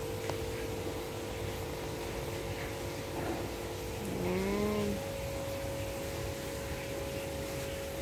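A steady hum holding a constant pitch over a low rumble. About four seconds in, a short voice-like sound glides up and down in pitch for under a second.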